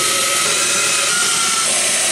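Cordless drill running steadily as it bores a pilot hole through two clamped boards, a continuous whirring cut with a faint whine.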